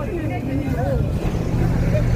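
Low rumble of a city bus engine running close by, growing louder about a second in, under the chatter of passers-by.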